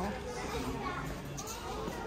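Low background hubbub of indistinct voices, children's among them, in a large, busy shop.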